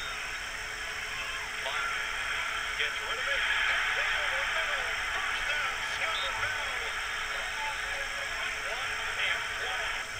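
Football game broadcast audio: stadium crowd noise that swells a couple of seconds in as a play runs, with commentators talking underneath.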